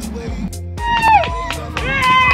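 Background music: a song with a steady beat and a sung voice holding long notes that slide at their ends.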